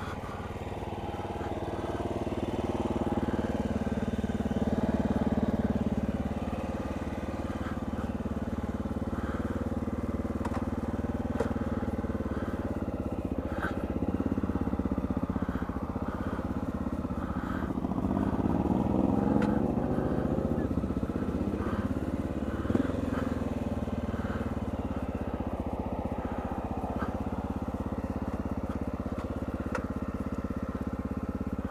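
Motorcycle engine running at low speed as the bike rolls along, growing louder for a few seconds about 4 s in and again about 19 s in as it picks up speed. A single sharp click about 23 s in.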